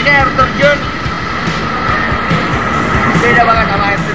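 A waterfall's steady, loud rush of falling water, with a man talking over it and a music bed underneath.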